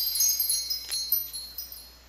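High, tinkling chimes ringing and fading away, with a faint tick about a second in.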